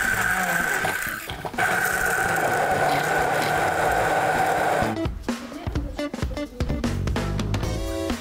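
Immersion hand blender running in a plastic beaker, puréeing parsley, garlic and oil into green oil: a steady motor whine that stops briefly about a second in, starts again and cuts off about five seconds in. Background guitar music follows.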